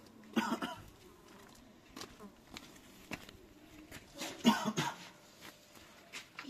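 A person coughing: two short bursts, about four seconds apart.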